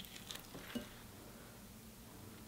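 Faint handling of cooked crab by hand: a few soft clicks and crackles of shell and meat being pulled apart in the first second, then only a faint low hum.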